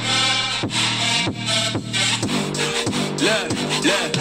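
A hip-hop beat with a sustained bass line, hi-hats and quick sweeping sounds, played through a Zealot S55 portable Bluetooth speaker as a sound-quality sample.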